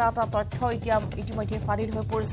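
A news narrator's voice over a background music bed with quick, clicking percussion.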